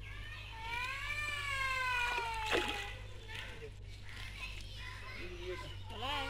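A high voice holds one long drawn-out call, its pitch rising and then falling, while a mesh hand net works the pond water. A sharp splash comes about two and a half seconds in.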